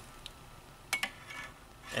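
A single sharp click about a second in, with a few faint ticks around it, from a hand-held lighter and a small crimp connector being handled over quiet room tone.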